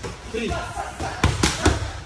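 A short shouted count, then three quick strikes landing on focus mitts in rapid succession, a three-hit combination, about a second and a quarter in.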